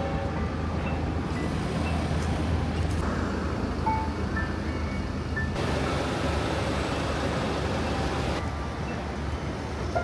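City traffic noise with a low rumble, soft background music underneath and a few short high chirps. The noise changes abruptly a few times.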